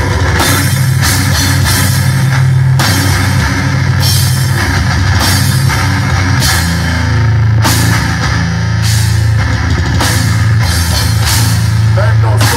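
Heavy metal band playing live and loud: distorted guitars and bass over a drum kit, with repeated crash cymbal hits.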